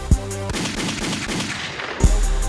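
Hip hop beat with one kick hit, then the drums and bass drop out about half a second in for a rapid, crackling burst of machine-gun fire sound effect.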